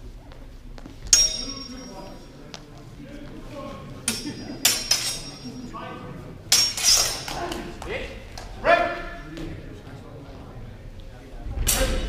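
Steel swords clashing in a fencing bout, a handful of sharp metallic strikes, each ringing briefly. The first, just after a second in, is the loudest. Voices call out between the exchanges.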